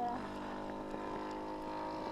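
Husqvarna 45cc two-stroke chainsaw engine of a radio-controlled model plane running steadily in flight, its pitch holding level.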